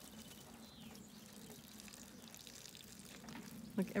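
Sheep urinating onto grass: a faint, steady trickle of liquid.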